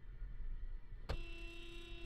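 Car horn sounding as a warning, a single steady blast starting about halfway through and held for about a second, over low road rumble inside a moving car.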